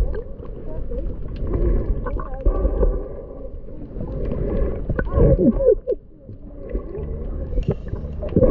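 Underwater sound picked up by a submerged camera's microphone: a muffled low rumble with gurgling and wavering, sliding tones, rising to a louder burst of sliding pitches about five seconds in and dipping briefly just after.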